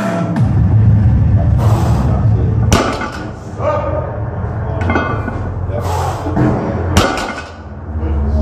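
A 180 kg plate-loaded barbell set down on the floor after each of two deadlift reps: two sharp thuds of the plates landing, about four seconds apart, over background music.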